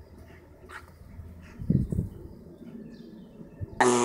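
Siberian husky digging and playing in sand: faint scuffing, and a couple of short low sounds from the dog about halfway through. Just before the end, a louder, steady pitched dog whine cuts in.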